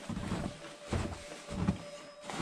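Footsteps in snow on a stairwell floor, three steps about two-thirds of a second apart.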